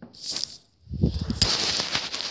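Handling noise on a phone's microphone as it is carried and moved: rustling and crackling, with the robe's fabric brushing against it. A short burst comes just at the start, then dense rustling with a few low knocks from about a second in.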